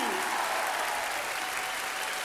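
Large audience applauding, a steady clapping that eases off slightly.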